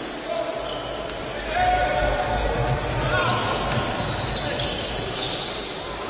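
Live basketball court sound: a ball bouncing irregularly on the hardwood floor and players' voices calling out, echoing in a sports hall.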